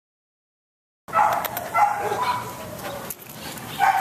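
A dog barking in short calls, starting abruptly about a second in after silence.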